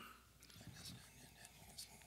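Near silence in a large hall, with faint whispering and scattered rustling as people settle.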